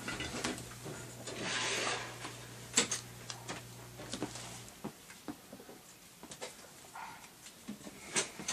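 Handling noise of things being moved about on a shelf as a model kit box is fetched: light scattered knocks and rustling, with one sharper knock about three seconds in.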